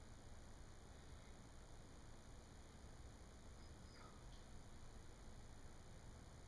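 Near silence: faint steady hiss of the room and recording, with no clear sound from the clay being pressed into place.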